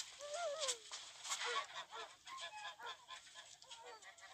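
Faint bird calls: many short, overlapping cries bending up and down in pitch, with scattered light clicks.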